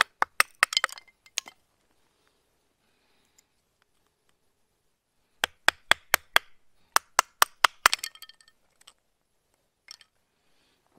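FoxEdge Atrax knife splitting small dry sticks for kindling. There are two quick runs of sharp wooden cracks, one at the start and one from about the middle, the second at about four cracks a second.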